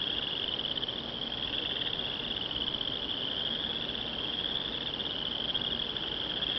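Steady, high-pitched chorus of crickets, running without a break.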